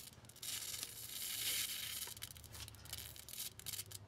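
High-voltage arc from a ZVS-driven flyback transformer, hissing and crackling as galvanized wire held in it burns with sparks, over a steady low hum.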